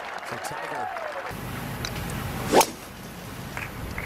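A golf club striking the ball on a tee shot: one sharp crack about two and a half seconds in, over a steady outdoor hiss.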